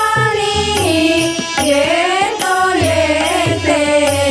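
Devotional Marathi bhajan singing, held and gliding sung notes, accompanied by harmonium and tabla.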